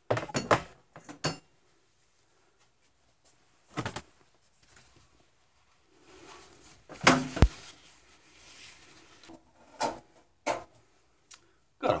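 Scattered knocks and clatter of things being handled on a workbench, with the rustle of a paper towel as hands are wiped.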